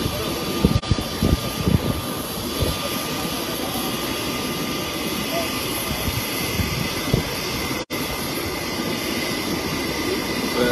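Steady jet aircraft engine noise, an even roar with a faint high whine. A few low thumps come in the first two seconds.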